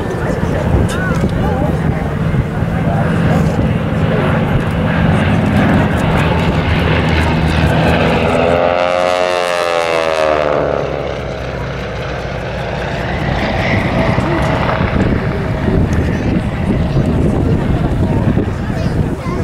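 Three vintage radial-engined propeller aircraft, a Beech Staggerwing, a Spartan Executive and a Travel Air Mystery Ship, flying past together with their engines droning steadily. About eight seconds in, the tone takes on a sweeping, phasing quality for a few seconds as they pass.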